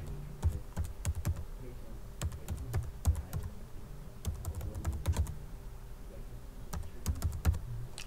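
Computer keyboard typing: runs of keystroke clicks in about four bursts, with short pauses between them.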